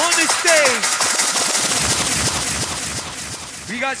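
Hardcore rave track on the PA: a pitched sample swoops down twice in the first second, then a fast machine-gun-like drum roll that gradually fades. An MC starts shouting at the very end.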